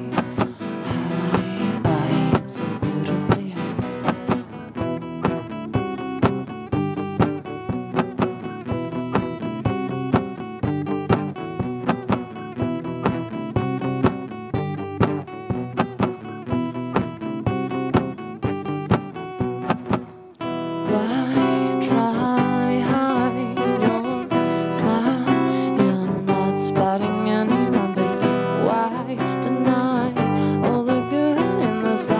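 Two acoustic guitars playing live together in a steady strummed and picked rhythm. The music drops away briefly about twenty seconds in, then comes back fuller and louder.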